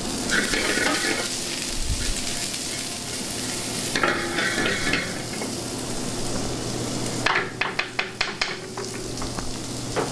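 Julienned zucchini, yellow squash, carrots and red onions sizzling in clarified butter in a hot sauté pan, the sizzle surging louder twice. Near the end, a quick run of about eight sharp taps.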